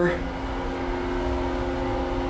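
Steady hum with a few held tones inside a stopped elevator car, with the end of a spoken word at the very start.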